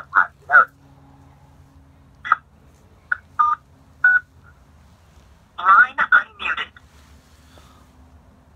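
Short, broken snatches of a person's speech with pauses between, over a steady low electrical hum.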